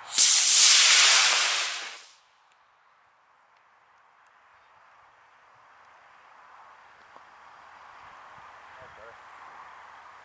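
24 mm Aerotech F32 composite rocket motor igniting and burning as the model X-15 rocket glider lifts off: a loud rushing noise that starts at once, fades and cuts off at burnout about two seconds in.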